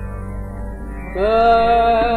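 Male Hindustani classical vocalist singing a thumri: over a steady tanpura drone, he enters about a second in on a long held note that scoops up slightly and then sustains.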